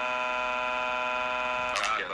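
A long crying wail, 'waaah', in a synthesized cartoon child's voice, held at one flat, machine-steady pitch, breaking off with a short wobble near the end.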